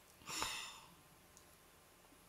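A single short, breathy exhale like a sigh, lasting about half a second, shortly after the start.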